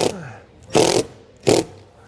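Cordless drill driving screws into the van's sheet-metal body in three short trigger bursts. The motor winds down in pitch after the first burst.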